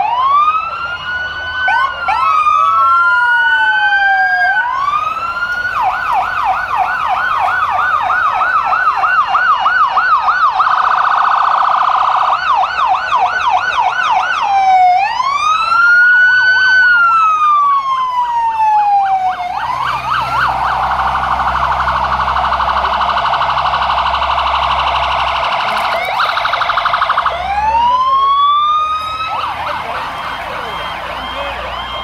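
Several fire trucks' electronic sirens sounding together and overlapping: slow rising-and-falling wails, broken by runs of fast yelp sweeps about three a second and a dense rapid warble. A low engine rumble from a heavy truck sits under the sirens in the second half.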